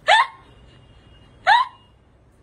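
A person's voice making two short, high, upward-gliding hiccup-like squeaks, about one and a half seconds apart.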